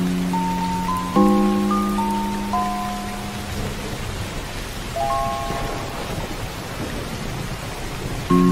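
Background music of slow, sustained keyboard chords over a steady rain sound. The chords drop out for a couple of seconds in the middle, leaving only the rain.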